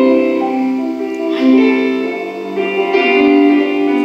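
Slow instrumental music, with held notes moving in an unhurried melody.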